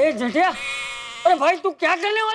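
Wavering vocal cries, about four in a row, each with its pitch bending up and down; one is held for most of a second. No clear words are heard.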